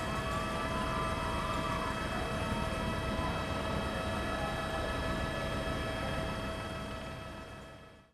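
A steady mechanical drone with faint, slightly wavering tones, fading out over the last second.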